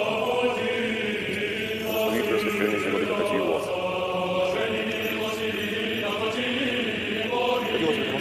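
Orthodox liturgical chant: voices singing a sustained, continuous church chant in Church Slavonic.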